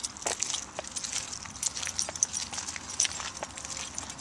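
Footsteps and light scuffing on asphalt from a person walking a leashed pit bull, with irregular small clicks.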